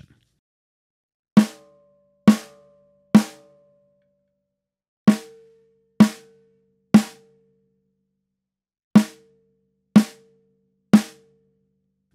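Snare drum with two half-pieces of Evans EQ Pod gel placed opposite each other on its batter head, struck nine times in three groups of three. Each hit dies away quickly under the muffling, but one prominent overtone is left ringing after the hits.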